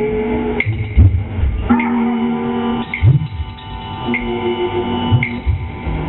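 Live improvised electronic music: sustained electronic tones that shift in pitch every second or so, over a regular click about once a second and a deeper thud about every two seconds.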